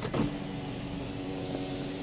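Background noise inside a parked car, with a light knock just after the start and then a steady low hum that holds one pitch.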